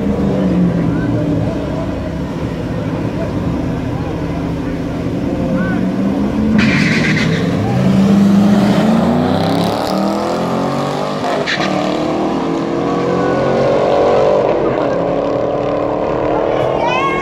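Drag-racing cars' engines revving and accelerating hard down the strip. The engine note climbs in pitch from about ten seconds in as the cars pull away.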